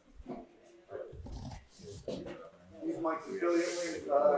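Indistinct background talking from several people in a gym, quieter than the main speaker, with one voice growing louder near the end.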